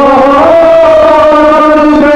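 Nauha, a Muharram mourning elegy, chanted by a male voice in long held sung notes. The pitch steps up slightly about half a second in and then holds steady.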